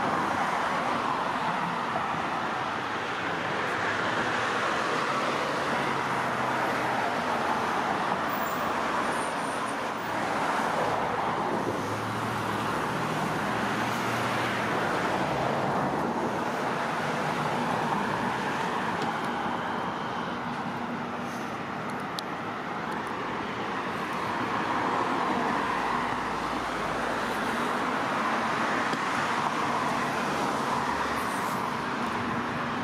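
Steady road traffic noise, with passing cars swelling and fading every several seconds.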